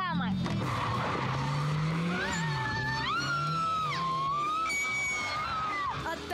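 Nissan S13 drift car's engine revving up and down as it slides, with its tyres squealing from about two seconds in; the squeal jumps higher in pitch about three seconds in and stops near the end.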